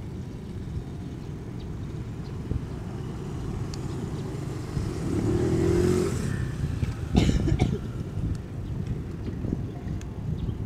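Outdoor road-traffic noise: a steady low rumble of passing vehicles, with one engine rising in pitch about five seconds in and a brief louder burst of noise about seven seconds in.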